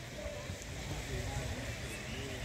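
Faint distant voices over a steady low rumble outdoors, with no close sound standing out.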